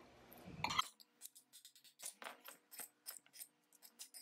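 A metal spoon clinking and scraping lightly against a glass mixing bowl as a quinoa salad is stirred: a string of faint, irregular clicks.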